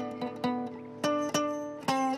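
Acoustic guitar picked one note at a time: a sparse solo of about five single notes, irregularly spaced, each ringing and fading before the next.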